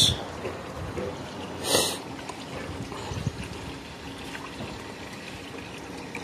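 Water trickling steadily from a garden goldfish pond, with a short hiss about two seconds in.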